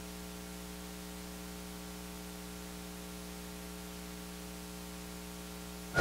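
Steady electrical mains hum with a faint hiss in the microphone's audio feed: a set of even, unchanging tones.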